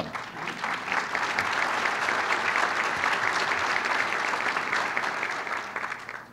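Audience applauding: a dense patter of many hands that builds over the first second, holds steady and tapers off near the end.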